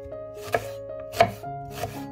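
Chef's knife slicing through a red onion and knocking down on a wooden cutting board, three cuts about two-thirds of a second apart, the middle one loudest.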